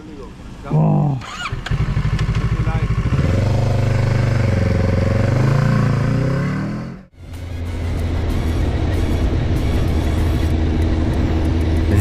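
Motorcycle engine pulling away, its pitch rising and falling as it accelerates through the gears. The sound cuts out briefly about seven seconds in and gives way to steadier engine and road noise.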